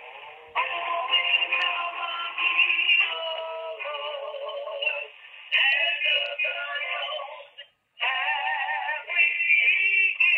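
Music with singing playing over a phone line through a cordless phone handset's speakerphone, thin and narrow in tone with no bass. It cuts out for a moment about eight seconds in, then resumes.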